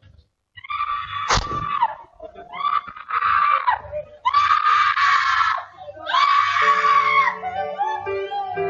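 A high voice crying out or singing four long held notes, each about a second, each falling in pitch as it ends, over a keyboard. A sharp click comes about a second and a half in.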